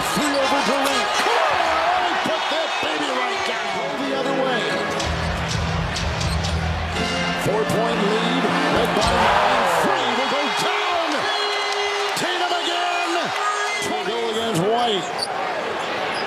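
Basketball game sound on a hardwood court: sneakers squeaking over and over as players cut and stop, with a ball dribbling and arena crowd noise behind.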